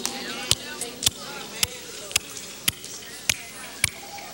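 A steady beat of single sharp percussive hits, about two a second, with faint voices behind.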